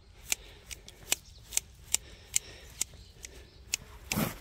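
Hand shears snipping grass: a run of sharp, crisp cuts at a steady pace of about two to three a second.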